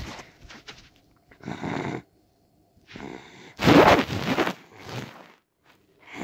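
A child imitating snoring for a stuffed animal: about four rough, breathy snores roughly a second apart, the loudest near the middle.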